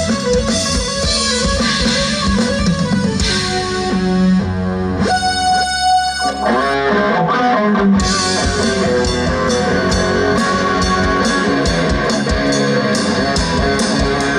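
Rock band playing live: distorted electric guitar leads over drums and bass. About five seconds in the drums drop out and held notes ring for a couple of seconds, then the full band comes back in near eight seconds.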